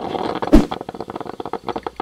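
An editing transition sound effect: a hard thump about half a second in, with rapid crackling clicks running on either side of it.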